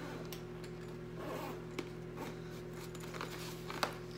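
Zipper of a soft insulated cooler bag being pulled open, with light rustling of the fabric and a sharp click near the end.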